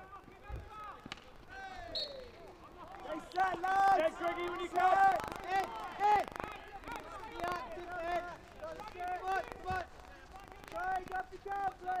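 Players on a field hockey pitch shouting short, repeated calls, with sharp clacks of hockey sticks striking the ball in between.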